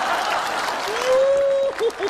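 Live studio audience applauding, with a man's long drawn-out exclamation over it about a second in.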